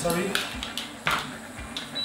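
Metal spoon clinking against a ceramic salt jar and a stainless steel pot as salt is spooned into the water: several light clinks, the loudest about a second in.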